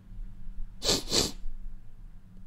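A man sniffing the air through his nose, two quick sniffs about a second in, as he catches a smell.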